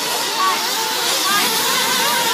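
Several 1/8-scale nitro RC buggy engines running on the track, a steady high buzz whose pitch rises and falls as the cars throttle up and back off.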